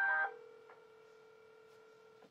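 Mobile phone on speaker placing an outgoing call: a brief, loud cluster of electronic beeps at the very start, then a single steady ringing tone of the call waiting to be answered.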